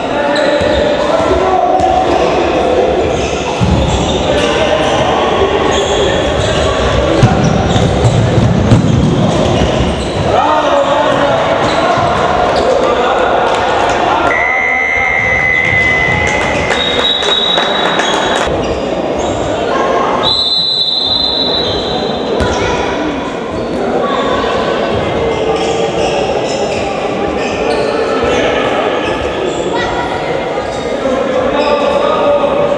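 Indoor handball play: the ball bouncing on the wooden court floor, with players' and spectators' voices echoing around the sports hall. About halfway through, three long, steady high tones sound one after another.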